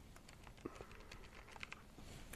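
Faint taps of a handheld calculator's keys being pressed one after another while a multiplication is keyed in.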